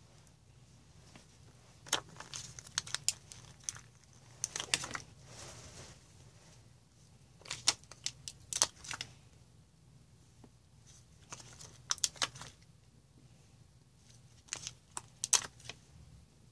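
Light crinkling and small sharp clicks of fingers handling a plastic-backed strip of craft pearls and pressing the pearls onto a paper card. They come in short clusters with pauses between.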